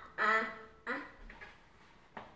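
Two short non-word vocal sounds from a person, one just after the start and one about a second in, then fading to faint room noise.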